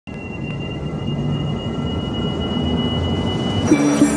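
Opening sound design for a radio network intro: a low rumbling drone with a thin, steady high tone above it that slowly swells in loudness. Near the end it breaks into a brief whoosh as the intro music takes over.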